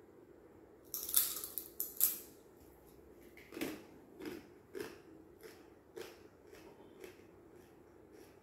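A person biting into and chewing a crisp Jolo chip: a cluster of loud crunches about a second in, then softer crunches every half second or so that fade away.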